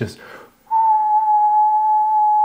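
A man whistling one steady, high, pure note through pursed lips, starting a little way in and held. He is imitating the constant whistle the basement makes when the wind blows.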